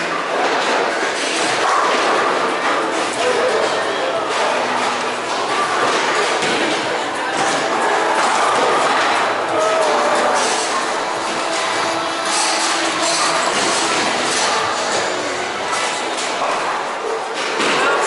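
Busy bowling alley: a steady background of many voices and music, with knocks and thuds of bowling balls and pins scattered through it.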